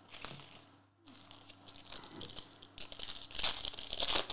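Foil wrapper of a 2022-23 Revolution basketball hobby card pack crinkling as it is handled, then being torn open, the tearing loudest near the end.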